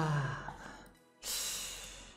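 A man's breathy exhale, like a sigh, starting suddenly about a second in and fading away.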